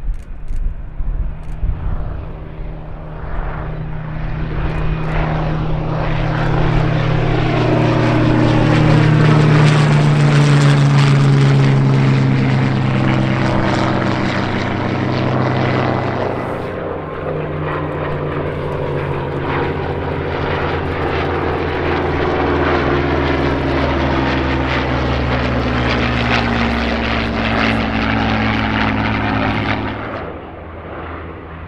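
Rolls-Royce Merlin V12 engines of a Hawker Hurricane and a Supermarine Spitfire at full takeoff power, growing louder as the pair climbs past, the engine note falling as they go by. After a sudden change about halfway through, the Merlins of a formation of fighters drone past, their pitch again slowly falling.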